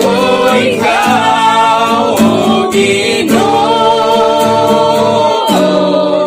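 Male singing with acoustic guitar strumming. A long note is held through the second half and ends about half a second before the close.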